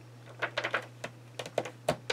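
A scatter of light, sharp taps and clicks, about seven over a second and a half with the strongest near the end, from fingers and fingernails pressing and tapping on a glossy magazine page.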